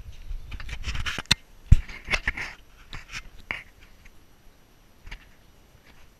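Irregular knocks and clicks with some rustling, the loudest knock about a second and a half in, thinning out and dying away after about four seconds.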